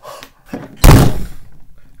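One loud slam: a single heavy thump a little under a second in, dying away within about half a second.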